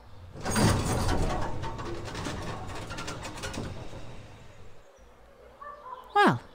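A large gate creaking and rattling open. It comes in loud at about half a second and fades away over the next few seconds.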